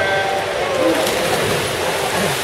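A short electronic start beep as the swimmers leave the blocks, then spectators cheering and shouting.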